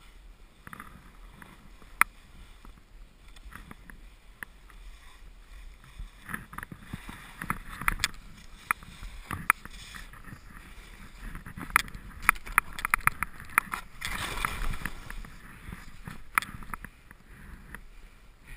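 Skis moving through deep powder snow, with scattered sharp clicks and knocks and a brief rush of sliding snow late on.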